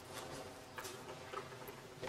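Quiet room tone in a pause between speech, with a few faint clicks.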